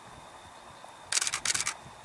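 Camera shutter firing in two short bursts of rapid clicks about a second in, close together.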